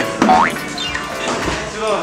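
Editor's comedic cartoon sound effect over background music: a quick rising slide-whistle-like glide a quarter second in, followed by a falling glide, with people laughing.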